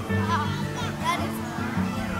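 Background music with children's voices at play over it, high-pitched voices loudest in the first second.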